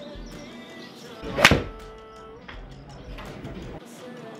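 A single sharp strike about a second and a half in: a TaylorMade P770 forged 7-iron hitting a golf ball off a hitting mat, struck solidly. Background music plays throughout.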